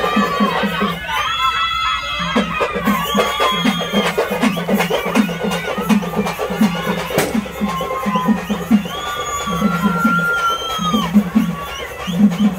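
Procession drumming: a low drum beaten in quick groups of several strokes, with a crowd and many short high calls over it.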